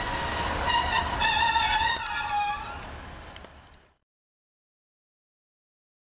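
A Class 156 diesel multiple unit running into the platform, with a wavering high-pitched squeal for about two seconds. The sound then fades and cuts off to silence about four seconds in.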